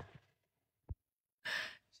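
A quiet pause broken by one small click just before the middle, then a short, soft breath from the woman near the end, before she speaks again.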